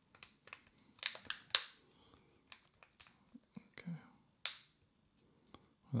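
Removable back cover of a Leagoo M5 smartphone being pressed on around its edges, its clips snapping into place: a series of sharp, irregular clicks and snaps, the loudest about a second and a half in.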